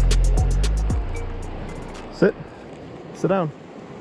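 Background music with a heavy, low beat that cuts off about a second in, leaving the steady rush of a fast river under two short shouts.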